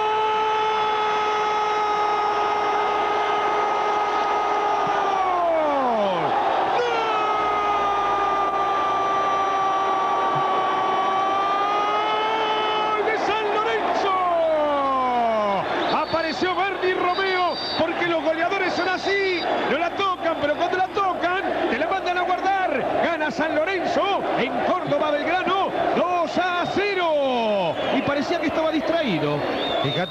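Football commentator's drawn-out goal cry, 'Goooool', held on one high pitch in two long breaths that each fall away, the first about six seconds in and the second about fourteen seconds in. It is followed by rapid excited shouting.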